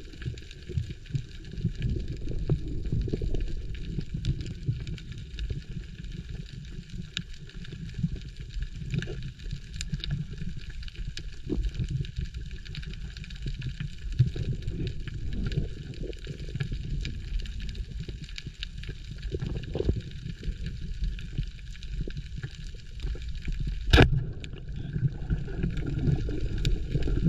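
Muffled underwater rumble of water moving past the camera housing, with scattered small clicks. About two seconds before the end comes a single sharp crack as the speargun is fired.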